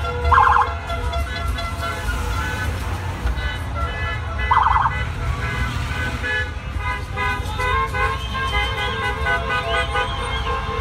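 Heavy street traffic with many car horns honking over a low rumble of engines. Two short, fast-warbling police siren blasts sound about half a second in and again about four and a half seconds in.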